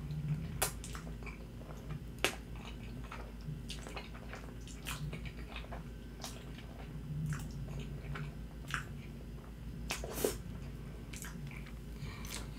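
Close-miked eating sounds from a mouthful of creamy fettuccine alfredo: wet chewing and slurping of noodles, with sharp mouth clicks every second or so.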